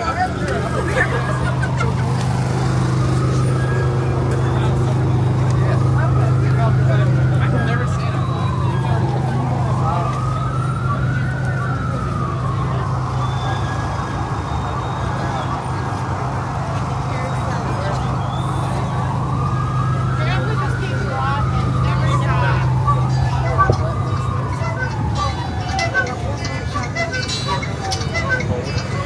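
Emergency vehicle siren wailing, its pitch rising and falling slowly over several seconds at a time, over a steady low hum and street noise.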